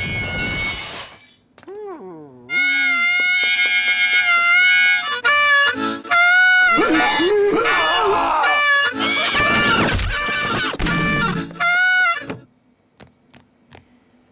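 Cartoon soundtrack: a shattering crash in the first second, then a falling pitch glide, then loud music of long held notes with knocks and crashes mixed in, which stops about a second and a half before the end.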